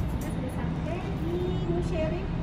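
Steady low rumble of an underground car park, with brief faint voice sounds.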